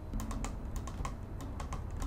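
Fingernails tapping on plastic Cell Fusion C skincare bottles: a quick, irregular run of sharp clicks, about a dozen in two seconds.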